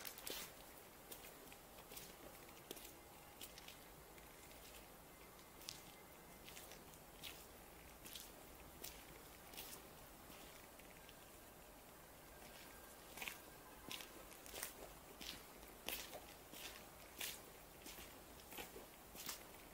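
Faint footsteps on a gritty paved yard, short light steps at a steady walking pace with a pause of a couple of seconds past the middle.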